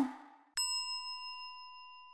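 A single bell-like ding sound effect: one chime struck about half a second in that rings and slowly fades.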